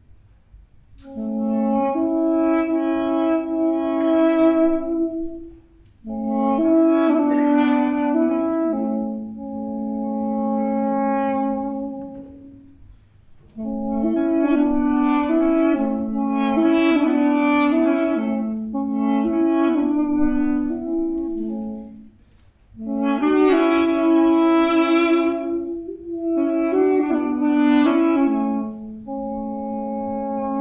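Two Armenian duduks playing a slow folk melody in duet, one part held against the other. The playing comes in phrases of long held notes, with brief breaks for breath about 6, 13 and 22 seconds in and a softer passage in between.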